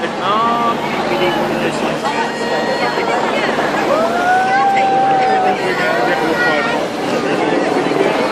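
Roadside crowd shouting and calling out as a line of support cars drives past, their engines and tyres under the voices, with one long drawn-out shout about halfway through.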